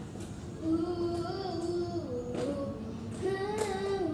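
A young girl singing a slow melody without accompaniment, starting about a second in with long held notes that step down and back up in pitch.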